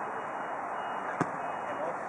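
A single sharp thud about a second in, a futsal ball being kicked on an artificial-turf court, over a steady background hiss.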